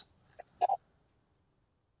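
Near silence, broken once by a brief short sound about two-thirds of a second in.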